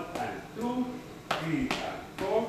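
Footsteps tapping on a tiled floor as line-dance steps are walked through, a few sharp taps, over a man's voice counting the beats.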